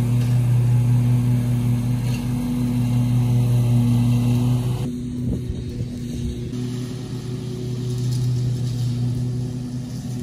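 Engine of a field-mowing machine running steadily at constant speed while cutting down high brush, a low, even drone.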